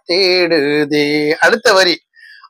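A man singing a melody solo, without accompaniment, in long held notes, with a few shorter syllables near the end.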